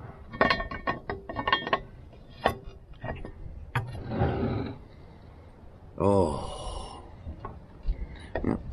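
Cast-iron double pie iron being shut and its handles secured: a quick run of metal clinks and clanks, a few more knocks, then a short scrape against the table about four seconds in. A brief grunt-like vocal sound follows about six seconds in.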